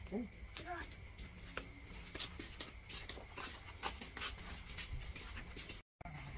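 Footsteps of several people walking on hard ground, irregular light clicks and scuffs, over a steady background of crickets chirping.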